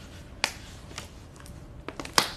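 Surgical glove being pulled onto a hand, with short sharp snaps of the glove material: a loud one about half a second in, then a couple of fainter ones.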